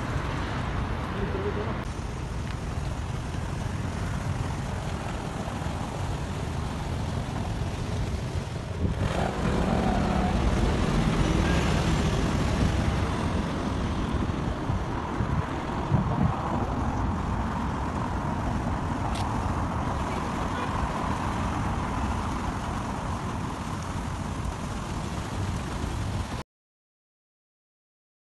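City street traffic: steady road noise from passing cars, with indistinct voices of people nearby. The sound changes character about nine seconds in, at a cut between two street recordings.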